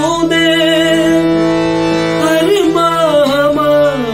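Man singing a line of a Hindi film song in a teaching demonstration: he holds one long steady note for about two seconds, then sings a winding phrase that bends up and down in pitch. A faint steady drone sounds under the voice.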